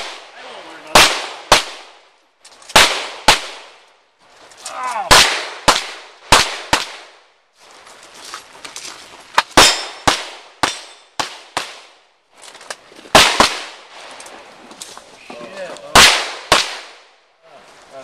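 Pistol shots fired in quick pairs and short strings, a pause of a second or two between groups as the shooter moves from target to target, each shot ringing out with a short echo.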